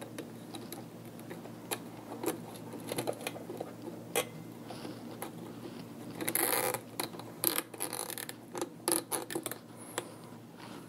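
Hands handling power-supply wires and a plastic cable tie: scattered light clicks and rustles, with a short ratcheting zip about six and a half seconds in as the tie is pulled tight, then a few more clicks.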